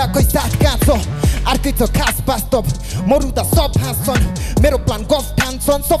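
A male rapper rapping fast into a microphone over a hip-hop beat with a steady bass line and regular drum hits.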